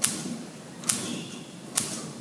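Pulsair system pulsing compressed air through a metal tube into a vat of fermenting grape must: three sharp pops a little under a second apart, with a faint hiss between them.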